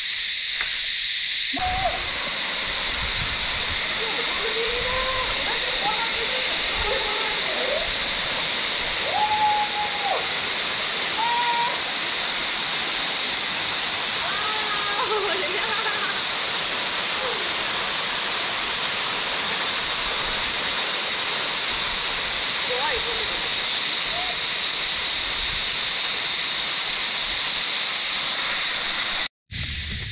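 Waterfall pouring down a rock face into a shallow pool: a steady rush of falling water. It sets in about two seconds in and cuts off just before the end.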